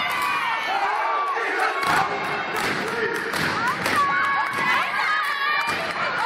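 Crowd cheering and shouting, many voices whooping and yelling at once, with repeated thuds from steppers' feet stomping on the floor.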